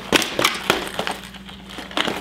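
Clear plastic tackle boxes of fishing lures knocking and clattering as they are set down on the table and picked up, with the lures rattling inside: a run of sharp clicks and knocks, the loudest shortly after the start.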